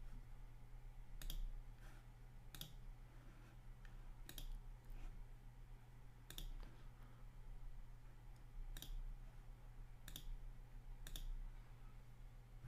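Computer mouse clicking about seven times, a click every second or two, as menu options are picked, over a faint steady low hum.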